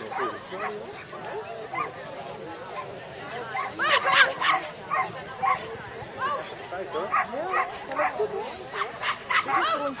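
A dog barking in short, quick barks from about four seconds in, at roughly two a second, loudest at the first burst, with voices in the background.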